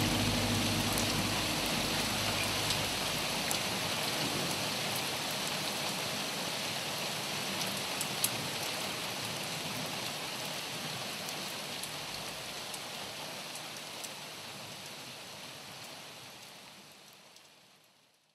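Steady rain hissing, with scattered drop ticks, slowly dying away and fading out near the end.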